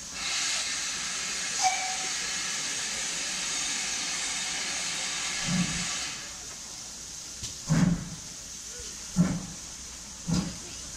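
Steam hissing loudly from a pair of GWR Manor class steam locomotives, cutting off after about six seconds. Then come the first slow, heavy exhaust beats, about one every second and a half, as the locomotives start their train away.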